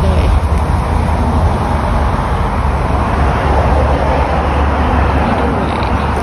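Steady rumble and hiss of road traffic from a nearby road, running evenly without a break.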